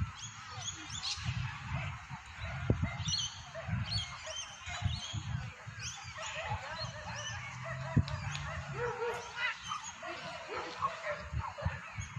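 Dogs giving short, high-pitched yelps and calls at scattered intervals.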